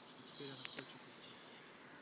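Quiet pause with faint outdoor background and a thin, steady high tone. About half a second in there is a soft, brief murmur of a voice with a couple of small clicks.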